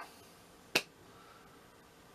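A single sharp finger snap, a bit under a second in.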